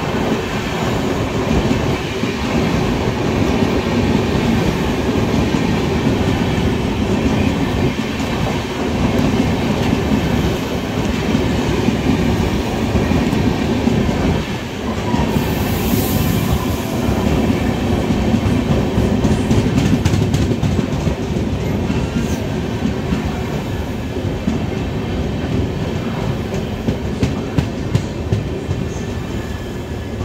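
LHB coaches of the Tejas Rajdhani Express rolling past on the adjacent track at close range. It is a continuous rumble of steel wheels on rail with clickety-clack over the rail joints. There is a brief hiss about halfway through and a run of sharp clicks near the end.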